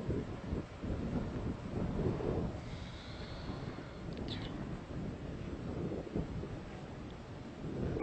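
Low, uneven wind noise buffeting an outdoor microphone, with a faint high chirp about four seconds in.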